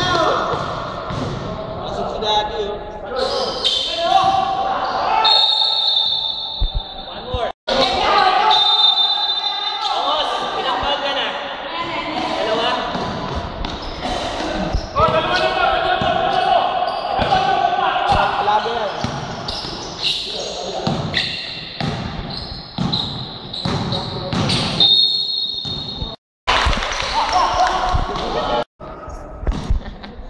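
A basketball bouncing on an indoor court during a game, with players' voices and shouts echoing in a large hall.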